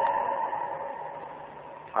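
A man's voice trailing off on a drawn-out final vowel, which fades away over about a second and a half. A faint low hum follows near the end.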